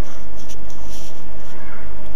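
Steady background hiss with a low hum and faint, irregular high ticks, made loud by the recording's level boost.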